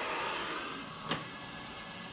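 Filament dryer's fan running with a steady whoosh, and a single sharp click about a second in as the dryer chamber's hinged plastic lid is shut.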